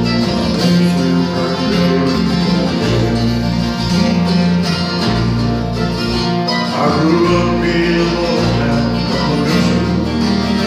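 Two acoustic guitars playing a country song together, picked and strummed steadily.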